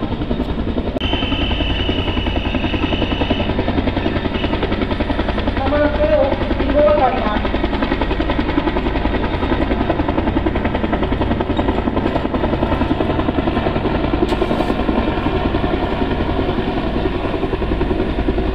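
UH-1 Huey helicopter flying low overhead, its two-blade rotor beating in a rapid, steady chop.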